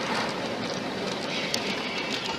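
Steady noise of a moving road vehicle, with a short click about one and a half seconds in.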